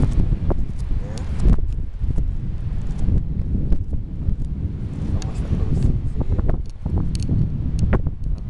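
Wind buffeting the camera's microphone on an exposed rock summit, a heavy low rumble that rises and falls in gusts, with a few sharp clicks.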